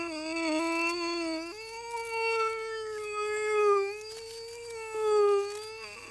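A puppeteer's voice holding a long wordless note with a slight waver, stepping up in pitch about one and a half seconds in.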